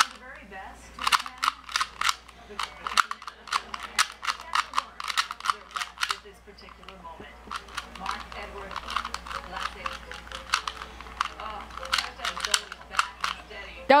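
LanLan plastic 2x2 cube being turned fast in a speed solve: rapid runs of sharp plastic clicks and clacks as the layers snap round, broken by brief pauses about three and seven seconds in.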